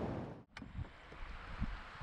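River water and wind on a kayak-mounted camera's microphone. The sound breaks off abruptly with a click about half a second in, then continues as quieter water noise with low, irregular bumps of wind on the microphone.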